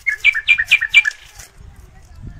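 A bird calling: a loud, quick run of sharp, high notes, about four a second, each dropping in pitch. It lasts about a second and then stops.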